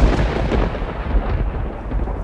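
Loud, low, blustery rumble of wind buffeting an outdoor microphone.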